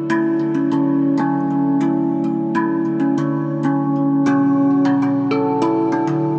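Handpan music: a steady run of struck steel notes, each ringing on, over sustained low notes.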